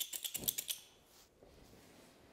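Quick run of light clicks, about seven a second, as a propane-oxygen rosebud torch is being lit; they stop under a second in.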